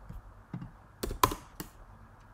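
Computer keyboard typing: a few scattered keystrokes, with a quick louder group of keys about a second in, as a comma and a line break are typed into code.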